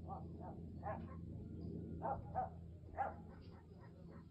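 Dog barking repeatedly, short barks coming in uneven pairs, over a steady low rumble.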